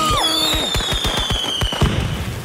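Fireworks going off: a high whistle slowly falling in pitch over a rapid run of crackling pops, with one louder bang just before the end.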